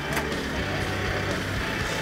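Isuzu D-MAX diesel engine working at low speed as the 4WD crawls up a rutted rock-step climb, heard under steady background music.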